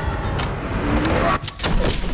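Sound of a violent physical struggle between two men: a loud rush of scuffling with several hard thumps, the last two close together near the end, and a brief strained voice in the middle.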